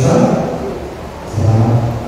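A man's voice chanting in long, steady held notes, in the manner of a recited prayer.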